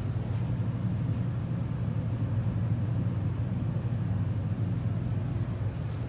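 Steady low hum and rumble inside a large traction elevator cab while it travels, with the cab's loud ventilation fan running.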